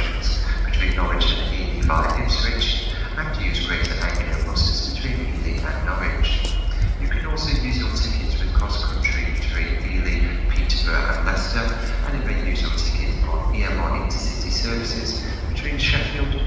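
Indistinct voices, with no words that can be made out, over a steady low rumble.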